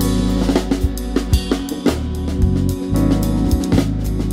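Live jazz band playing, the drum kit prominent with frequent snare, kick and cymbal hits over sustained electric bass notes and keyboard chords.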